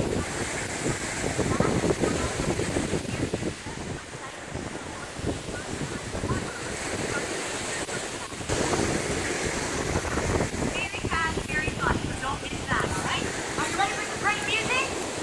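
Gusty wind buffeting the microphone over the wash of waves breaking on a lakeshore, rough and uneven throughout, with a sudden jump in level about eight and a half seconds in.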